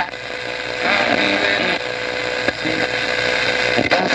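Zenith Model H845 vacuum-tube radio's speaker giving out a steady rushing hiss with a steady whistle held from about a second in until near the end, the broadcast voice all but lost under it.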